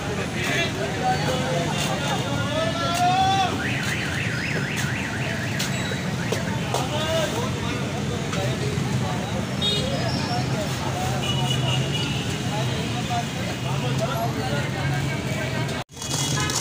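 Busy street din: a steady low engine hum with scattered voices, and a warbling electronic tone about three to four seconds in, followed by short repeated beeping tones later on.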